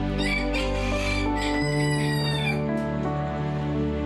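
A rooster crowing over soft, slow background music, the crowing falling silent before three seconds in.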